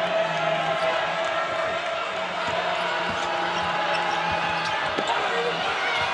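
Basketball dribbled on a hardwood court, a few separate bounces, over steady arena background noise with held droning tones.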